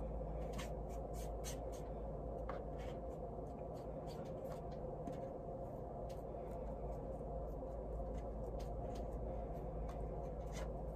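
Faint scratching of a paintbrush stroking watercolor onto laser-cut birch plywood, with scattered light ticks, over a steady low hum.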